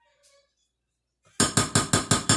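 Metal spoon clinking against a glass mixing bowl while stirring shredded turkey salad: a quick, even run of about eight clinks, roughly six a second, starting a little over halfway through.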